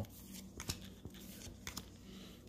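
Baseball cards being flipped through by hand off a stack, with a few soft clicks of card edges, over a faint steady low hum.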